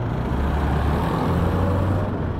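Road traffic noise: a steady rumble of passing vehicles, with a low engine drone that comes up about half a second in.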